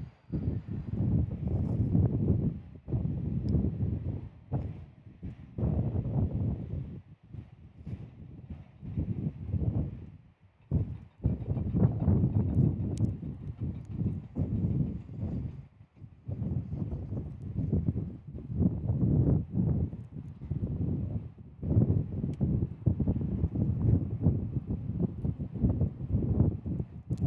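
Gusty wind buffeting the microphone, coming in irregular surges and lulls about every second or two.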